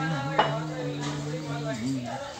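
A single sharp clink of a metal dish or utensil, with a short ring, about half a second in, over a steady low hum that wavers in pitch.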